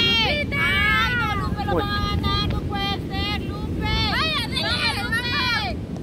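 Several high-pitched women's voices calling out and cheering one after another, over a steady low rumble of wind on the microphone.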